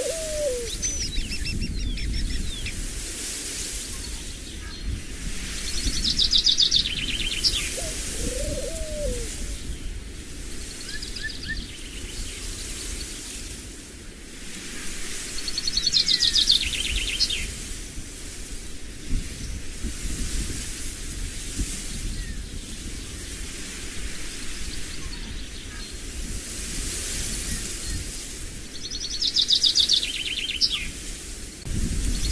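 Songbird singing short trilled phrases that fall in pitch, repeated every few seconds, over a steady low rumble.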